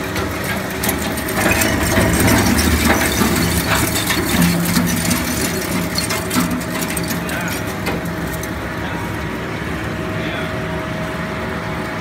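Industrial crate shredder running under load, with a steady machine drone and irregular cracking and clattering as the crate material is torn apart. The crushing is heaviest over the first half and thins to a steadier drone in the last few seconds.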